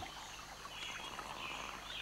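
Faint nature ambience: a few soft bird chirps over a low, even background hiss.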